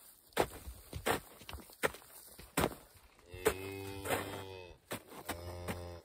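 A cow mooing twice: a long, low call a little past halfway and a shorter one near the end. Scattered footsteps and knocks in the straw are heard throughout.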